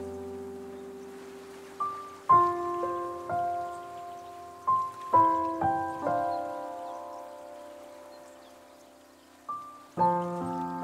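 Slow solo piano: a held chord fading away, then single notes and chords struck a few at a time from about two seconds in, each left to ring and die down, growing quiet near the end before another note sounds.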